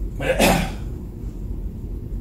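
A man's single short, breathy vocal noise about half a second in, like a snort or half-spoken exhale, over a steady low room hum.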